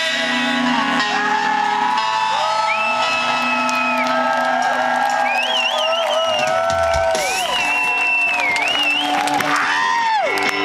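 Live indie rock band playing with held guitar notes and wavering, sliding high tones over a steady low note, while the crowd cheers and whoops.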